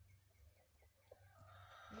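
A broody hen vocalizing faintly as she is disturbed on her nest: a run of soft short notes, then a sound that grows a little louder in the second half.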